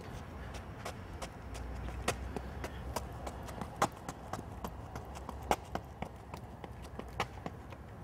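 Training shoes striking a rubber running track in quick, uneven steps during a sprinter's quick-leg drill, with a harder foot strike every second and a half or so and lighter steps between. A steady low rumble runs underneath.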